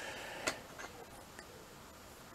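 A Lego Technic battle droid model set down among the other builds: one sharp plastic click about half a second in, then a few faint ticks.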